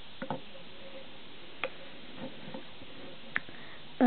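A few light clicks and taps of a small spoon against a plastic toy cup and plate while scooping flour, spread out over the few seconds, over a steady background hiss.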